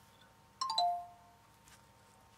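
A call-ended tone sounds as the phone call is hung up: a short electronic chime of three notes stepping down in pitch, a little over half a second in.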